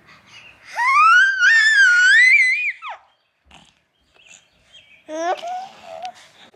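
Four-month-old baby squealing happily: one long high-pitched squeal that rises and wavers for about two seconds, then a shorter coo near the end.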